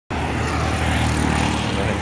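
Steady low rumble and hiss of city traffic and outdoor street noise.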